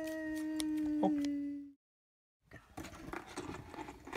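A voice holding one long, steady sung note that cuts off abruptly, followed by a moment of dead silence. Then faint rustling and light taps of toys being handled.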